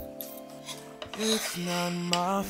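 Kitchen knife blade scraping across a cutting board, a scratchy rasp starting about a second in, over background R&B music.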